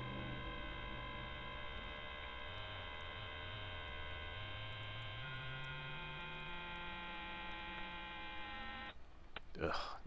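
A steady electronic hum of several held tones, with a low tone slowly rising partway through, cutting off suddenly about nine seconds in.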